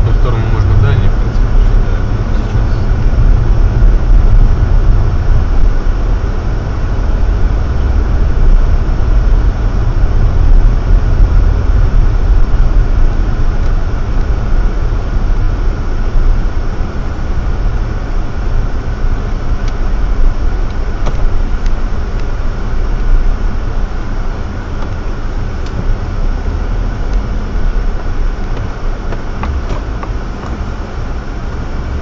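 Car driving on a snowy road, heard from inside the cabin: a steady low rumble of engine and tyres that eases somewhat near the end as the car slows almost to a stop.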